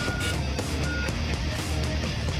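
Loud, dense theme music for a TV programme's opening titles, with a short high electronic beep at the start and another about a second in.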